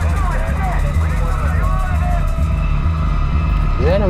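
Bell UH-1 'Huey' helicopter running in flight, its rotor beating steadily and low throughout, with voices over it.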